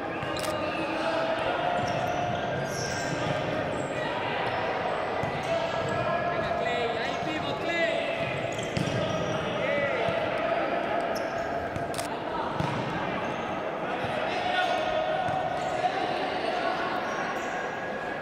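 Futsal match sounds echoing in a sports hall: the ball knocking off players' feet and the wooden court several times, voices calling out, and a few short squeaks, most likely shoes on the court, about halfway through.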